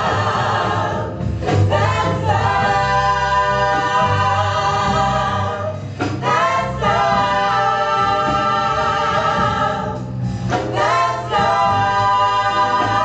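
Five women singing a special song together through handheld microphones, in long held phrases broken by short pauses about one, six and ten seconds in.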